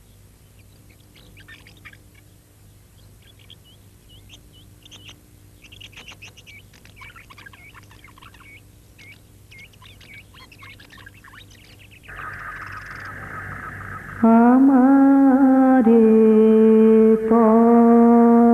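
Faint bird chirping, many short scattered chirps, for about the first twelve seconds. Then a steady drone of background music sets in. About fourteen seconds in, loud long-held musical notes enter, stepping to a new pitch a couple of seconds later.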